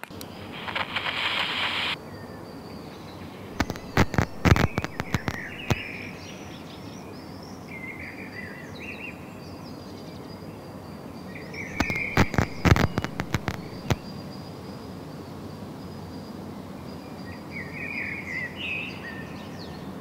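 Outdoor background with birds chirping on and off throughout. A brief hiss in the first two seconds, and two loud clusters of sharp cracks, one a few seconds in and one just past the middle.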